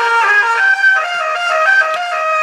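Boom Blaster horn speaker, set off by its wireless remote, playing a musical tune of several held notes that step in pitch every half second or so.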